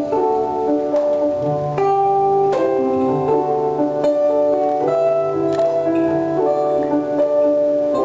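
Portuguese guitar playing a plucked melodic instrumental line over keyboard accompaniment, with a low held note underneath.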